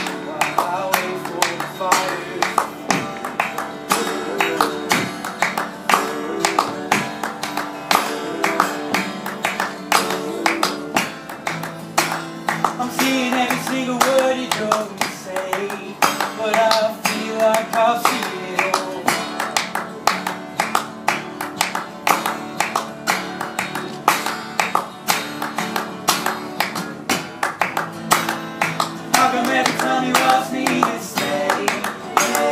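Acoustic guitar strummed with a man singing, while people clap along in a steady rhythm.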